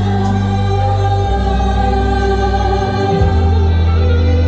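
A woman singing a sweet pop love ballad live into a microphone over an accompaniment, with long held notes and a steady bass line.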